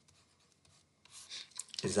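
Stylus writing on a pen tablet: quiet at first, then a few short scratchy strokes about a second in. A man's voice starts near the end.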